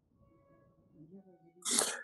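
Near silence with a faint murmur, then near the end one short, sharp breathy sound from a person, lasting under half a second, just before speech begins.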